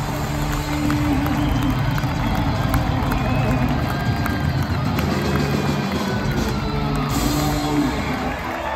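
Live rock band in an arena holding the closing notes of a song, amplified guitar and bass ringing steadily, under a large crowd cheering.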